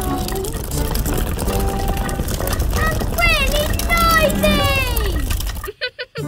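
Cartoon soundtrack: background music with a character's wordless voice that slides up and down in pitch between about three and five seconds in. It all drops out suddenly just before the end.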